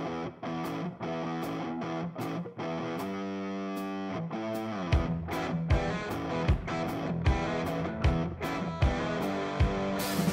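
Background music: a guitar-led track playing sustained chords, with a steady heavy beat coming in about five seconds in.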